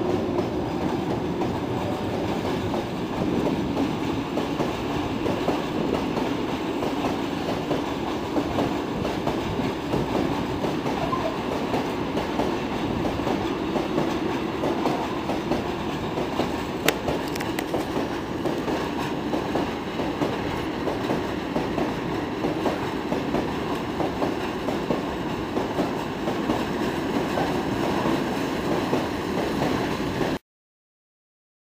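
A long, heavily loaded freight train of tank wagons rolling past: a steady rumble of wheels with clickety-clack over the rail joints. It is hauled by two Škoda class 181 electric locomotives, the second of which is passing at the start. A single sharp click comes about halfway through.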